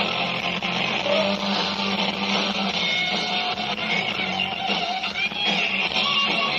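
Live rock band playing, with loud electric guitars over bass and drums; held guitar notes stand out in the second half.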